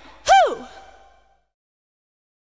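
A single short voice-like call that swoops up in pitch and back down about a third of a second in, closing the song, with an echo trailing off over the next second into silence.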